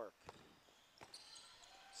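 Faint basketball bouncing on an indoor gym court, with two ball thumps and then high sneaker squeaks from about a second in.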